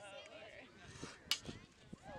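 Indistinct voices talking on an open field, with one sharp smack a little past the middle.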